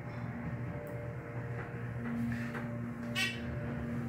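Dover hydraulic elevator travelling, heard from inside the cab: a steady low hum with a few steady tones, one getting louder about halfway through. A short high chirp comes a little after three seconds in.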